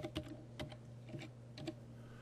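Computer keyboard being typed on: about five separate, faint keystrokes tapping out a short word, over a low steady hum.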